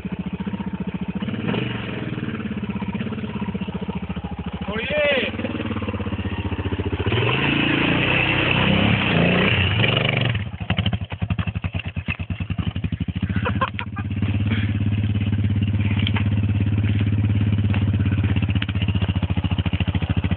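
Dirt bike engine running throughout, revving up to its loudest for a few seconds before the middle. It then runs roughly and unevenly for a few seconds before settling into a steady idle.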